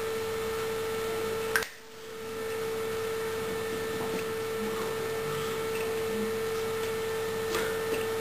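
A steady electrical tone just under 500 Hz with fainter higher tones over a bed of hiss. About one and a half seconds in, a click is followed by a brief drop in level before the tone returns, and there are a few faint clicks near the end.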